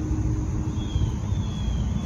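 Outdoor background noise: a low, uneven rumble, with a faint thin high whine in the second half.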